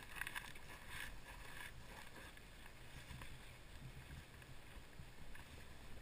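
Faint, muffled low rumble of a vehicle, with a few crackles in the first two seconds.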